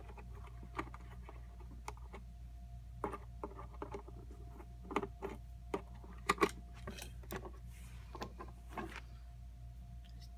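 Scattered plastic clicks and knocks of a toy pirate treasure chest being handled and tried, busiest in the middle, over a faint steady hum. The battery-powered animated toy itself makes no sound: it is dead.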